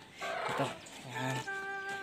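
A rooster crowing: one steady, held call in the second half, after a brief rustle near the start.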